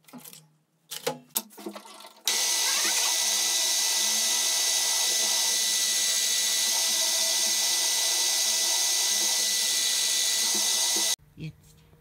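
Brief rattle of tools in a steel tool-chest drawer, then a drill press drilling into an aluminium bar: a loud, steady whine made of many held tones, running about nine seconds and cutting off suddenly near the end.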